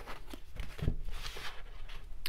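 A deck of oracle cards handled and shuffled by hand: soft papery rustling and small clicks, with one soft thump just under a second in.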